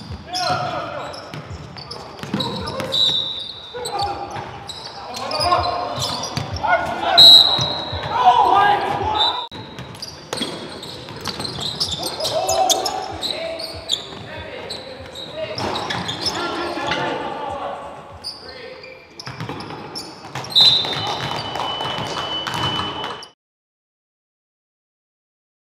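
Live gym sound of a basketball game: players' voices shouting and calling across the echoing hall, a basketball bouncing on the hardwood, and short high shoe squeaks. The sound cuts off suddenly near the end.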